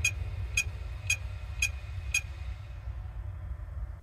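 Opened Western Digital hard drive powered up, its head arm clicking five times at about two clicks a second over a steady low hum, then the clicking stops. The clicking is the sign of a very weak read/write head that needs replacing, possibly with a spindle motor problem as well.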